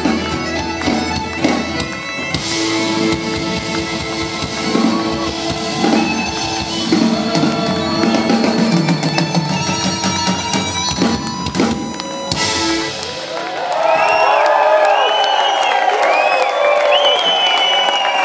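Traditional folk band session with bagpipes, accordion, fiddle, banjo and guitars playing together over a steady drone. The tune ends about 13 seconds in, and the audience cheers and whoops.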